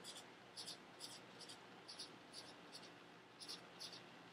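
Faint scratchy strokes of a marker tip on sketchbook paper, about three short strokes a second, as small circles are drawn.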